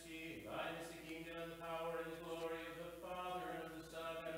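Orthodox liturgical chant: a voice singing a slow, drawn-out melodic line of long held notes over a steady low note.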